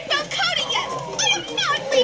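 Speech only: high-pitched cartoon voices talking fast, played back from a TV.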